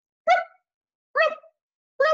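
A woman's voice giving two short, high-pitched sound-effect cries, about a second apart, acting out the octopus noises printed on a picture-book page.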